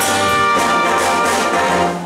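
Big band brass section, trumpets, flugelhorn and trombones, playing a full held chord together. The chord cuts off sharply right at the end.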